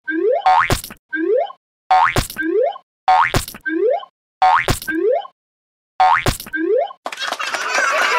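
A cartoon "boing" sound effect, a quick rising springy twang with a sharp pop, played over and over at an even pace with short silences between.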